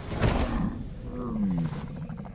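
A large dragon's roar from an animated film soundtrack: a sudden loud burst near the start, followed by a lower growl that slides down in pitch.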